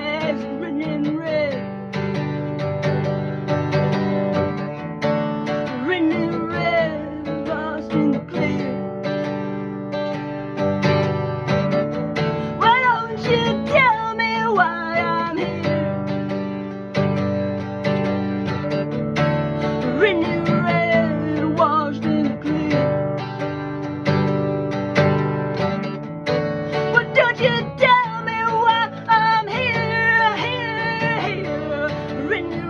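Acoustic guitar strummed steadily, with a voice singing over it in stretches.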